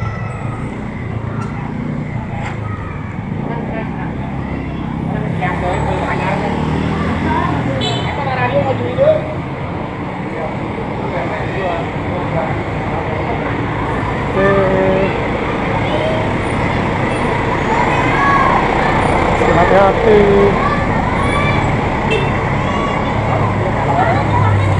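Slow, congested street traffic: cars and minibuses running close by with a steady low engine rumble, with people talking over it.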